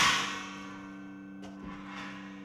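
A metallic clang at the very start, ringing out and fading over about half a second, with a faint click about one and a half seconds in. A steady low electrical hum runs underneath.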